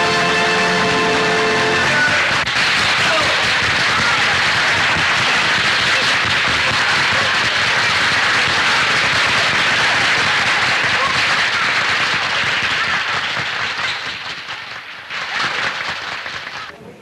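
A piece of music ends on a held chord about two seconds in, then applause and crowd voices follow and die away near the end.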